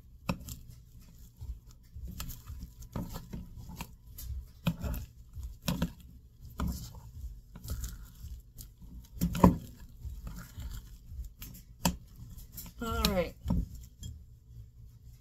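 Metal spoon stirring thick banana-bread batter in a glass mixing bowl: uneven scraping strokes with knocks of the spoon against the glass, the loudest about two-thirds of the way through. A short sliding vocal sound comes near the end.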